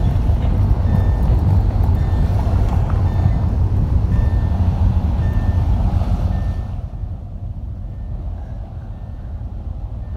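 Car interior while driving: a loud low rumble of engine and road that eases about two-thirds of the way in, with a short high electronic beep repeating evenly, roughly once a second, like a dashboard warning chime.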